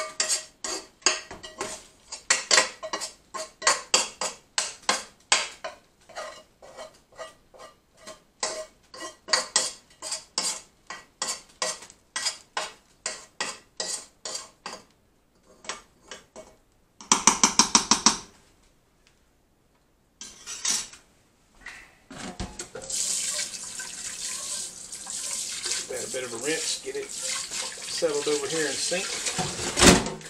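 A spoon repeatedly knocking and scraping against a nonstick skillet and the rim of a stainless steel stockpot, about three or four knocks a second with a metallic ring at first, then a quick rapid rattle of taps. After a short pause a kitchen tap runs steadily for the last seven seconds or so.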